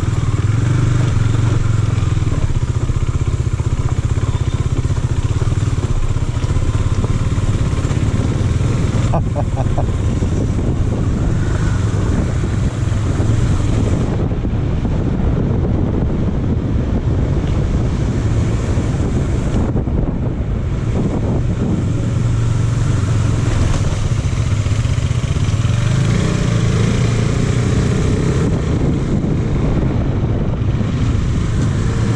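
KTM Duke 390's single-cylinder engine running steadily while the bike is ridden, heard from on the bike, with wind and road noise on the microphone.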